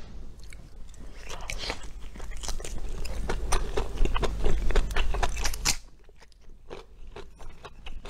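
Close-miked chewing and biting of sauce-coated chicken: a dense run of short mouth clicks that grows louder, then drops to quieter, sparser chewing about six seconds in.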